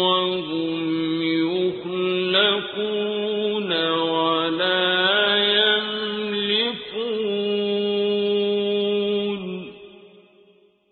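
A man chanting Quran recitation in Arabic, drawing out long, steady held notes with short melodic turns between them. The last long note ends a little before the close and fades away.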